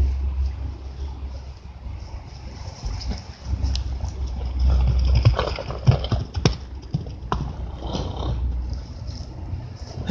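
A horse's hooves thudding on turf as she bucks and kicks, a handful of thuds in the middle, over wind rumbling on the microphone.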